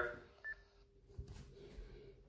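Short single beep from the Icom ID-52 D-STAR handheld's speaker as the received digital transmission drops, the radio's end-of-transmission standby beep. A faint steady hum and a few faint ticks follow.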